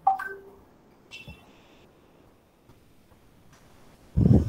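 Short electronic beep tones: a sharp pitched blip right at the start that steps down in pitch, then a brief higher tone about a second in.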